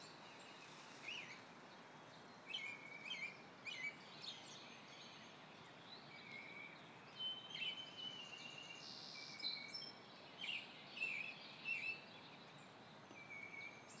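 Songbirds chirping and whistling in short, scattered calls over a faint steady hiss.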